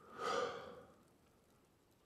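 A person's sigh: one breathy exhale with a little voice in it, swelling just after the start and fading within about a second.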